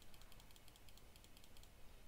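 Faint, rapid computer-keyboard clicking that stops shortly before the end, over near-silent room tone.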